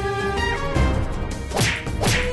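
Fight-scene punch whoosh sound effect: a fast swish that falls in pitch about one and a half seconds in, over a music score with sustained tones.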